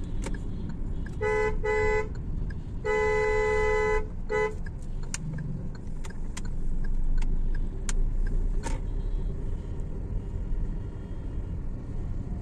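Car horn honking four times in a row, two short toots, a longer one of about a second, then a short one, over the steady low rumble of engine and road noise inside a moving car's cabin.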